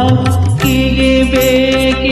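Instrumental interlude of a karaoke backing track: held melody notes over a steady percussion beat, with no singing.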